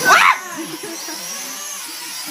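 Toy quadcopter drone's small electric motors whirring, the pitch wavering as it flies, after a brief loud high-pitched squeal at the very start.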